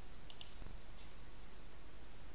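Two quick light clicks of a computer mouse button about a third of a second in, and a fainter click about a second in, over steady low microphone hiss.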